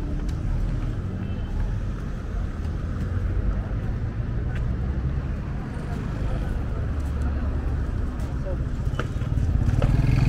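Busy city street: a steady rumble of traffic engines with voices of people passing by. An engine grows louder near the end.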